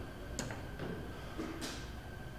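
Quiet room tone with a single light click about half a second in and a short hiss near the end, over a faint steady high hum.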